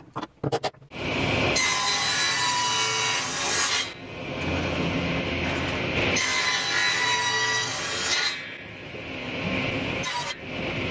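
Table saw running and cutting twice through the wooden trim on the edge of a plywood tabletop to trim it flush. Each cut lasts about two seconds, and the saw runs freely between and after the cuts. Before the saw is heard there is about a second of sharp metal clicks from bar clamps being handled.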